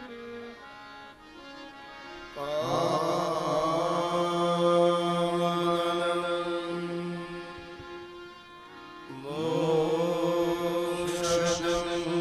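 A man's voice chanting a devotional verse in long, held notes, in two phrases: the first starts about two and a half seconds in, the second about nine seconds in. A quieter steady drone sounds beneath and fills the gap between the phrases.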